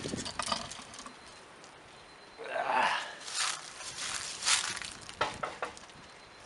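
A metal lid lifter hooking the handle of a cast-iron Dutch oven lid and lifting the lid off, with scattered clinks and scrapes of metal on cast iron.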